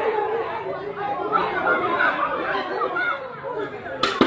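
Several people talking at once, their voices overlapping in a steady babble of conversation.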